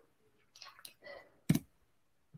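A single sharp click about one and a half seconds in, with a few fainter ticks and soft breath-like noises before it.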